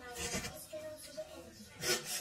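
Quiet mealtime sounds of people eating with faint voices: short soft rustles and mouth noises, then a brief sharp breathy hiss just before the end.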